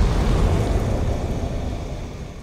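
The tail of a cinematic logo-intro sound effect: a low, noisy rumble that slowly dies away.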